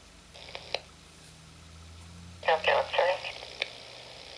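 Police radio traffic heard through a trunking scanner's speaker: a brief burst under a second in, then a thin, tinny radio voice transmission from about two and a half seconds in.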